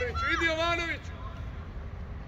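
One loud, high-pitched shout from a voice on the pitch during the first second, then only a steady low rumble.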